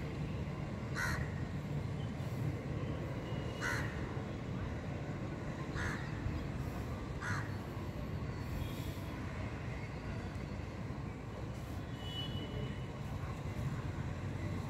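Crow cawing: four short caws a couple of seconds apart in the first half, over a steady low outdoor rumble.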